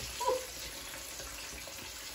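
Steady, even background hiss, with a brief short vocal sound about a quarter second in.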